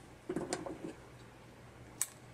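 Soft handling sounds of yarn and weaving tools being picked up at the loom: a brief cluster of small knocks and rustles about a third of a second in, and a single click at the end.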